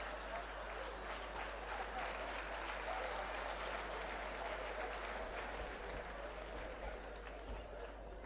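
Theatre audience applauding steadily, easing off a little toward the end.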